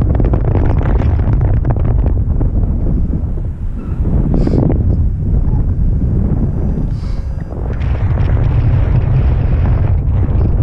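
Wind buffeting the camera microphone of a paraglider in flight: a loud, steady rushing rumble that eases slightly twice.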